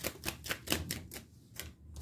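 A deck of tarot cards being shuffled by hand: a quick run of crisp card clicks, about seven a second, thinning out after about a second.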